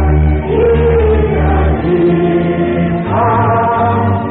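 Background music: voices singing long held notes over a low bass line that shifts pitch a few times.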